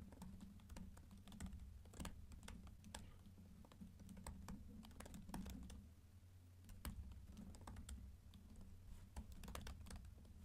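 Faint typing on a computer keyboard: quick, irregular key clicks, with a short pause about six seconds in.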